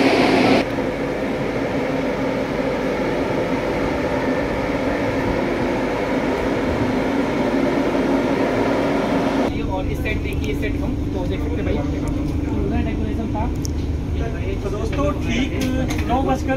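Steady hum from a parked passenger train's coaches, their air-conditioning running, with a low steady tone. An abrupt cut about two-thirds of the way through gives way to low rumble and background voices.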